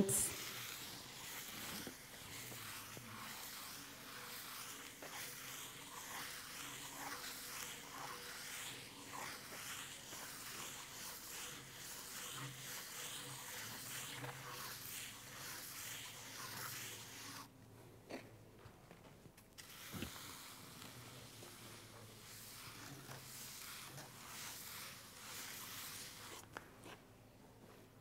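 Wooden float rubbed in zigzag strokes over fresh mortar plaster, a faint, steady, gritty scraping. It stops for a couple of seconds about two-thirds of the way through, then resumes and stops shortly before the end.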